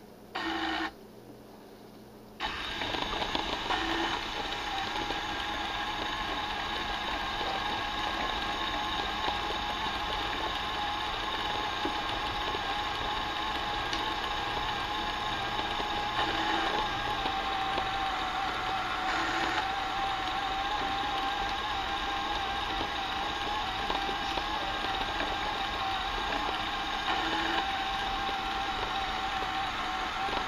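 Small Lego electric motor and its gearing running steadily, with a whine that sinks slowly in pitch. It starts about two seconds in, after a short burst of the same sound just before.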